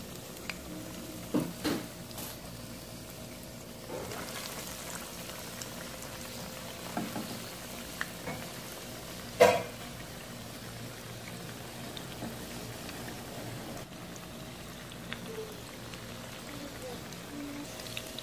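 Breaded chicken popsicles deep-frying in a pan of hot oil: a steady bubbling sizzle. A few sharp clicks sound over it, the loudest about nine seconds in.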